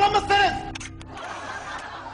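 A man's voice speaking Turkish for about half a second, then two short clicks just before a second in, followed by a quiet stretch with a faint steady hum.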